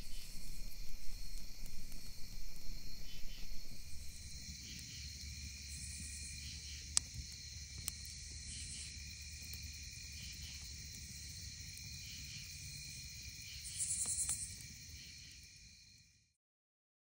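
A steady night chorus of crickets chirping, with an uneven low rushing noise for the first four seconds. A campfire gives two sharp pops about a second apart midway, and the sound fades out at the end.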